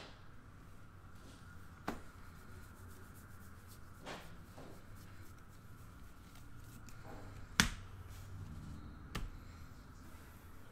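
Baseball trading cards handled and flipped through by hand: soft rubbing and sliding of card against card, with four short sharp clicks, the loudest about three-quarters of the way through.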